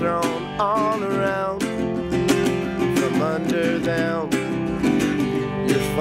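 National resonator guitar strummed in a steady rhythmic accompaniment, chords ringing between the strokes.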